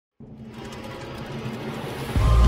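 Intro sound effect: a noisy synthesized swell that starts a moment in and grows steadily louder, the build-up of an animated logo intro.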